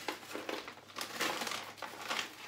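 Plastic bag of frozen sliced peaches crinkling as it is shaken out, with a few sharp knocks as the frozen slices drop into a plastic Tupperware stack cooker container.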